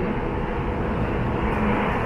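Steady low rumble of city street traffic, with no distinct events.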